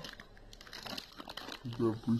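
Plastic instant-noodle packet (Samyang Buldak Carbonara) crinkling as it is handled, a quick run of crackles lasting about a second.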